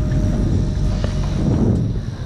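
Low, steady rumble of the boat's outboard motor running while the boat follows a hooked fish.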